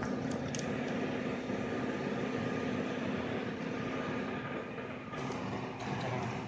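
Steady mechanical hum of background machinery, with a constant low tone and a faint higher whine over an even noise.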